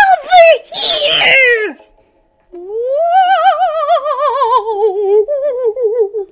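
A voice shouts a short line, then, after a brief pause, a reader's voice gives a long wavering "muuuu" wail that wobbles quickly in pitch and slowly falls, lasting about three and a half seconds: the monster's cry voiced by the reader.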